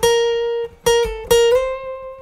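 Single notes picked high on the B string of a steel-string acoustic guitar, a solo melody line. Each note is re-struck a few times, then near the end the player slides up two frets and the note is left ringing.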